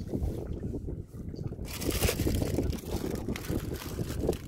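Wind rumbling on the microphone, with water splashing as a gill net is pulled up by hand beside a small boat; the splashing is loudest for about a second, around two seconds in.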